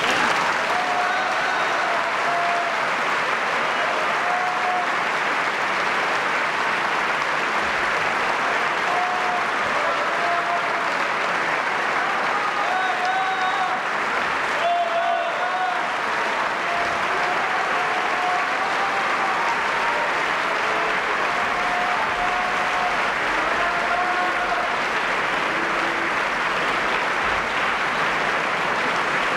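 A large concert-hall audience applauding steadily at the end of a song, with scattered shouts from the crowd over the clapping.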